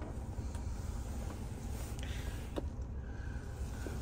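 Steady low rumble inside a car cabin, with a few faint clicks.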